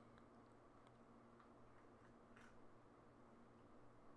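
Near silence: room tone with a faint steady hum and a few faint scattered ticks.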